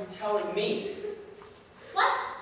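Speech only: a man's voice speaking a short line of stage dialogue, trailing off about a second in.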